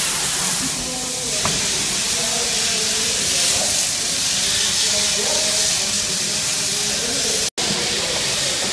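Steady hiss of a large building's background noise, with faint distant voices under it; the sound cuts out for an instant near the end.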